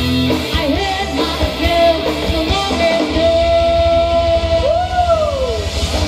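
Live rock band playing: a woman singing over electric guitars and a drum kit. She holds one long note in the middle and lets it slide down near the end.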